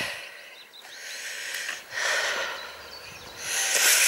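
A person breathing close to the microphone: a few noisy breaths, each swelling and fading, with outdoor ambience between them.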